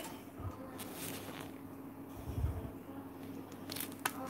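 Faint handling noise from the camera being moved to a new angle: light rustles and small clicks, with a soft low thump a little past the middle.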